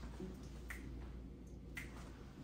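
Finger snapping in a slow, even rhythm, about one snap a second, over a faint low hum.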